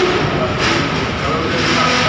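Honda Vario 125 scooter's single-cylinder engine idling steadily.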